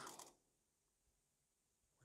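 Near silence, after the brief tail of a spoken word at the very start.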